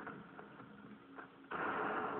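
Fight-scene soundtrack of a martial-arts film played through a TV speaker: a few light knocks, then about one and a half seconds in a sudden loud rush of noise.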